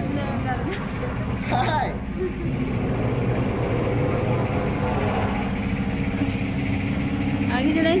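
A steady low rumble, with a short voice-like sound about a second and a half in and a voice starting near the end.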